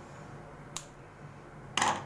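Scissors cutting a crochet cord. There is a faint click about a third of the way in, then a louder, sharp snip near the end.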